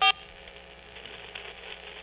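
Faint, steady hiss of an open telephone line heard through the studio sound, thin and band-limited like a phone call, while the caller is silent. A brief voiced sound ends it at the very start.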